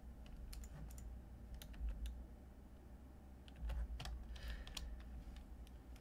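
Faint, scattered computer keyboard key presses, a few clicks at a time, as Blender shortcut keys are entered, over a low steady hum.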